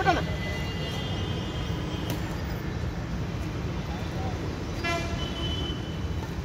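Steady low traffic rumble with a short vehicle horn toot just before five seconds in. A shout is heard at the very start, and a badminton racket smacks the shuttlecock about two seconds in.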